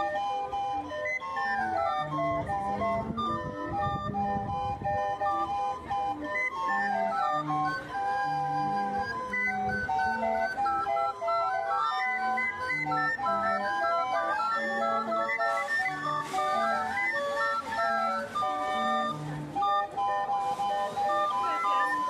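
Mexican street barrel organ (organillo) cranked by hand, playing a tune: a high melody of short notes over short, regularly spaced bass notes.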